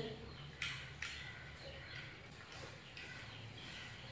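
Faint room tone with one short sharp click about half a second in and a softer one soon after.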